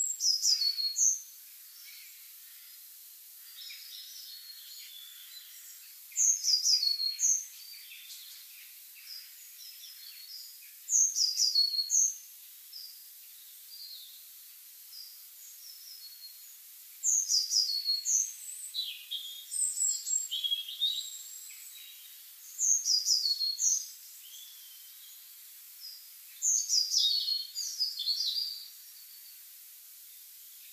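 Songbirds singing: a short, high, descending song phrase repeats every few seconds, about seven times, with fainter chirps between.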